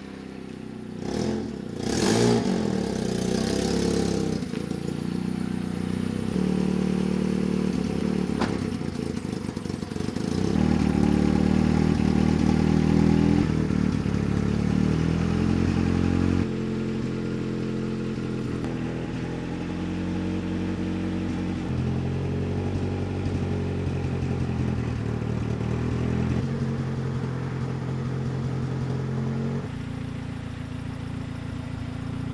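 1989 Honda CRX Si's 1.6-litre four-cylinder engine running as the car pulls in, with a short rise in revs in the first few seconds, then running at low revs.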